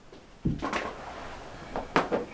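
Handling noise from props being moved: a knock about half a second in, then a scraping rustle and a sharp click just before the end.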